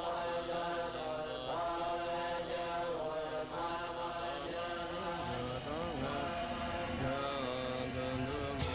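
Mantra-like chanting voices on held, slowly shifting pitches, with a lower steady drone joining about five seconds in.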